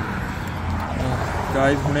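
Steady low rumble of outdoor street noise, with a man starting to speak near the end.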